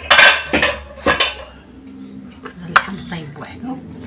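Metal cooking pot and its lid clanking as they are handled and the lid is lifted off: a cluster of sharp knocks in the first second, then a few more near the end.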